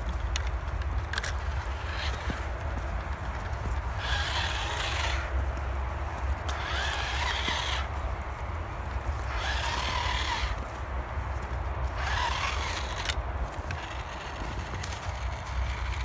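Toy-grade RC crawler's small electric motor and gearbox whining in four bursts of about a second each, driving at full throttle but weakly on a nearly flat battery. A steady low rumble runs underneath.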